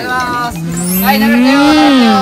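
A long, drawn-out vocal call, about two seconds, that rises in pitch and then falls again.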